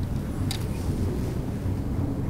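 Steady low rumble of background room noise, with a single short click about half a second in.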